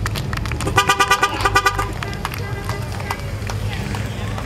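A vehicle horn honked in a rapid string of short toots for about a second, beginning a little under a second in, over the low rumble of idling parade vehicles.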